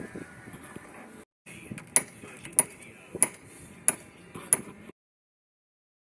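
Bricklaying tools knocking on brick: five sharp, evenly spaced knocks about two-thirds of a second apart, over a steady background hiss. The sound cuts off abruptly near the end.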